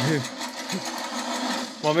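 Steady mechanical noise from a film trailer's sound track, with a short laugh about half a second in.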